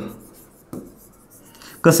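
Pen writing on an interactive display board: faint scratching strokes, with a small click a little under a second in. A man's voice resumes near the end.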